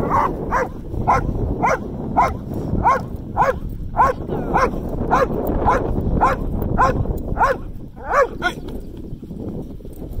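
Dutch Shepherd barking steadily at a helper in the blind in an IGP hold-and-bark, about two barks a second. The barking stops about eight and a half seconds in.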